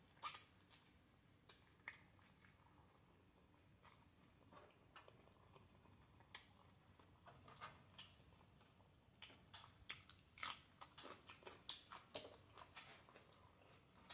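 Faint chewing and mouth sounds of a person eating, a scatter of soft smacking clicks that come thicker in the last few seconds.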